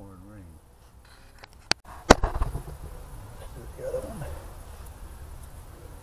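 A sharp click, then just after it a louder hard knock with a short rattle, with brief snatches of a low voice before and after.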